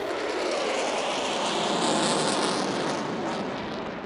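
Jet engine noise from an F-15 Eagle fighter flying past: a steady rushing sound that fades slightly near the end.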